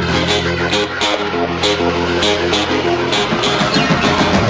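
Instrumental passage of a rockabilly song, with no singing: guitar notes over a held bass line and an evenly spaced beat.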